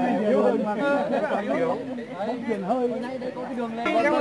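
A group of people chatting, several voices talking over one another.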